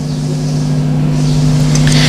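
A steady, even low hum, like a motor, slowly growing louder, with a rising hiss near the end.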